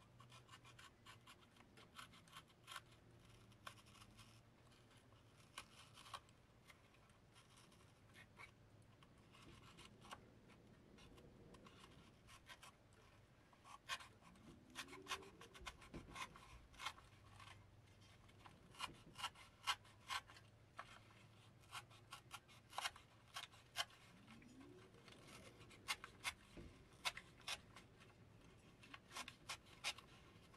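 Craft knife cutting and scraping through the old paper cone and dust cap of a Bose 301 Series II woofer: faint, irregular scratches and clicks that grow more frequent in the second half, with a couple of short rising squeaks.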